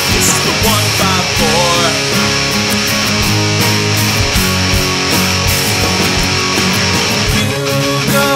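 Rock song in an instrumental passage: electric guitar over a steady beat, with a bending lead-guitar line in the first couple of seconds.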